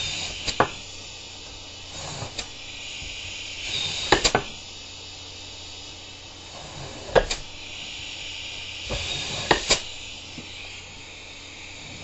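Sharp knocks and clacks, several in quick pairs, from a homemade PVC pneumatic cylinder being handled, its half-inch bolt ram sliding in and out through neoprene-and-washer seals that are dry and starting to come out with the shaft, over a steady hiss.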